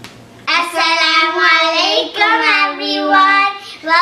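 Two children's voices singing together in a sing-song chant, with long held notes starting about half a second in.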